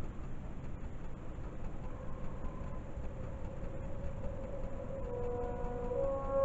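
Steady low rumbling background noise from a TV filmed with a camera. About two seconds in a faint held musical tone fades in, and near the end several sustained notes of a film trailer's music begin.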